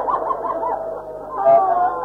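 Many voices of a mourning audience weeping and wailing aloud together, wavering overlapping cries that dip about halfway and swell again, on an old, muffled tape recording.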